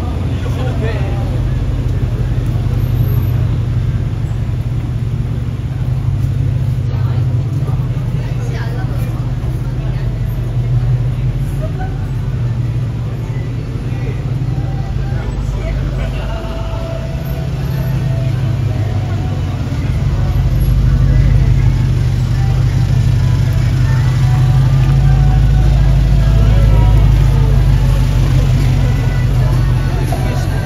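Busy city street ambience: passers-by talking, cars moving slowly close by, and a steady deep hum with music faintly underneath. The low hum grows louder about two-thirds of the way through.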